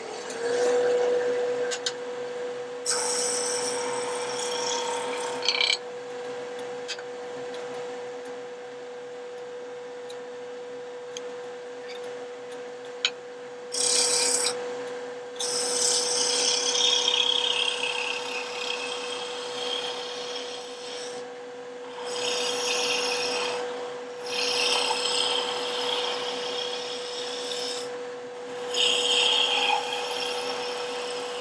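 A wood lathe runs with a steady hum that settles in just after the start, as the turning speed is brought up. A hand-held turning tool cuts the spinning wooden spindle in about six passes of one to four seconds each, each pass a loud hissing rasp of shavings coming off.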